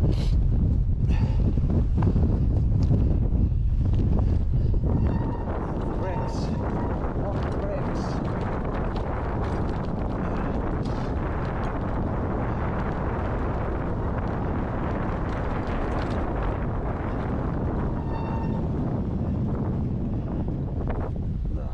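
Wind buffeting the camera microphone, heaviest for the first five seconds and then steadier. Scattered knocks and rattles come from a mountain bike riding over a rough stone-slab path.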